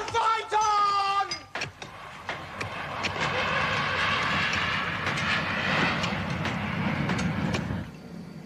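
A brief high-pitched cry at the start. Then the rushing noise of a jet airliner's engines as it flies over, building over a couple of seconds and holding steady.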